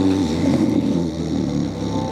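A young man's put-on snoring: one loud, rough, drawn-out snore with a fluttering rumble, held for about two seconds.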